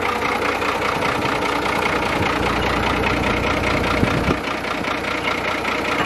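An engine idling steadily close by, with a deeper low rumble swelling for a couple of seconds in the middle.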